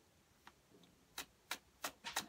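A deck of tarot cards being shuffled by hand: a faint tap about half a second in, then three short, sharp clicks of cards knocking together in the second half.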